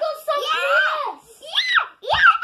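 A young girl's excited high-pitched squeals of delight, with one sharp rising-and-falling shriek about a second and a half in.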